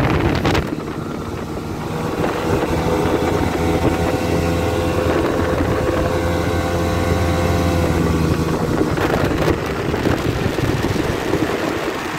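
Outboard motor pushing a Delta 17 boat at speed, a steady engine drone that climbs slightly in pitch a couple of seconds in. From about nine seconds the engine tone fades under a rush of wind and water.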